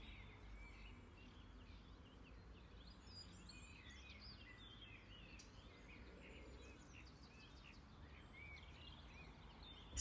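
Faint birdsong: several small birds chirping and warbling over a low steady hiss.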